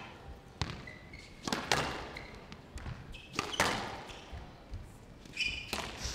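Squash rally on a glass court: the ball is struck and hits the walls in sharp knocks, roughly one to two a second and irregularly spaced. Brief high squeaks come from the players' shoes on the court floor between the shots.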